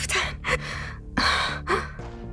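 A woman gasping for breath, about four sharp, laboured breaths in quick pairs, over a soft steady musical score.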